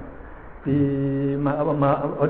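A man's voice in a chant-like recitation. It starts about two thirds of a second in with a long syllable held on one steady pitch, then moves on with shorter syllables that change in pitch.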